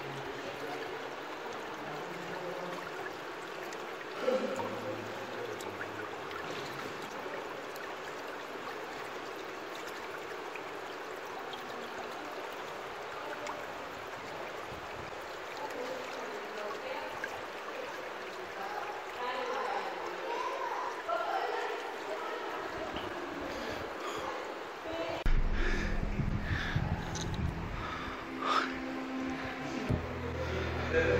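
Shallow water running steadily over stones in a narrow stone channel. From about five seconds before the end, a loud low rumble and knocks cover it.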